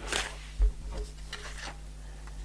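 An oracle card being drawn from the deck and handled: two short papery slides of card on card, with a soft bump about half a second in.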